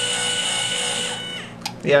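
Two 12 V linear actuators with potentiometer feedback retracting together, their electric motors giving a steady whine that winds down in pitch and stops about a second and a half in.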